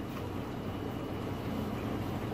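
Steady low hum from aquarium pumps with water circulating in a reef tank, no distinct splashes.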